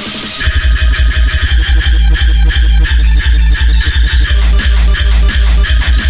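Hardtekk track: after a brief break without the kick, the heavy distorted kick drum comes back in about half a second in and pounds on at a fast, even tempo under high synth lines.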